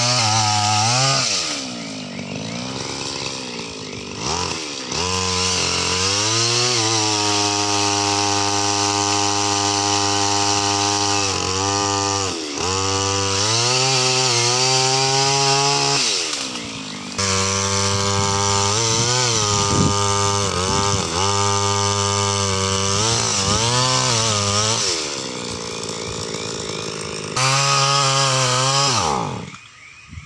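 Small petrol engine of a pole saw (long-reach tree cutter) running at high revs as it cuts branches overhead. It drops back toward idle and revs up again several times, about 2, 12, 17 and 25 seconds in, and stops just before the end.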